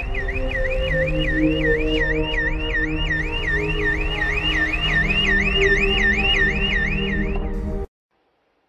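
A car alarm warbling, its tone sweeping up about three times a second, with a fainter, higher warble joining about two seconds in, over slow sustained background music. It all cuts off abruptly just before the end.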